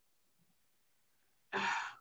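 Near silence, then, about a second and a half in, a short audible breath or sigh into a microphone just before speech.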